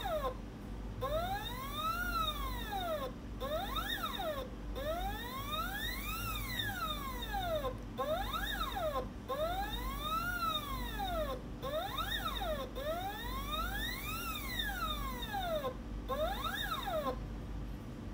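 Stepper motor on a small linear positioning stage, pulsed by a Vexta SG8030J controller and moving back and forth about eight times. Each move is a whine that rises in pitch and falls back, with short and longer moves alternating and brief pauses between them. The rise and fall is the controller's acceleration and deceleration ramp, taking the motor from low speed to high speed and back.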